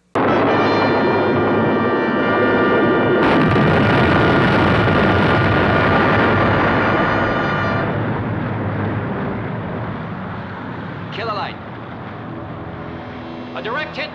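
TV soundtrack explosion of a missile strike: a sudden loud blast that rumbles on for several seconds and slowly dies away, under a held dramatic music chord.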